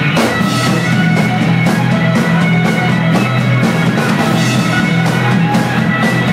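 Live rock band playing loud, with electric guitar and bass over a drum kit, a steady pulse of cymbal hits running through it.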